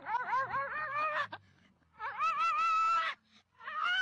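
An animal calling three times, each call drawn out for about a second with a wavering, warbling pitch; the third call starts near the end.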